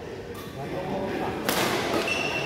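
A badminton racket striking a shuttlecock once, about one and a half seconds in: a sharp crack that echoes in the hall, over background chatter.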